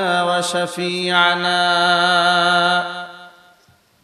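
A man's voice chanting the Arabic opening praise of a sermon in a drawn-out melodic recitation. The voice holds one long note that fades out about three seconds in.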